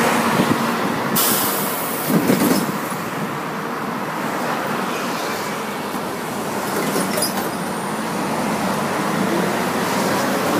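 Moving city bus heard from inside: steady engine and road noise, with a sudden hiss of air starting about a second in and lasting over a second.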